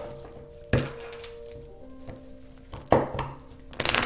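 Tarot cards being handled and snapped as they are drawn from the deck: a few sharp card snaps, about a second in, near three seconds and just before the end. Soft background music with held notes plays underneath.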